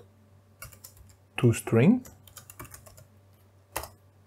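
Typing on a computer keyboard: short runs of quick keystrokes with pauses between them. A brief low voiced murmur around the middle is the loudest sound.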